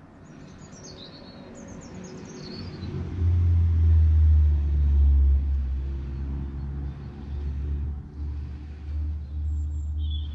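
A low engine-like rumble swells over the first three seconds, then holds loud, rising and falling. Birds chirp a few times near the start.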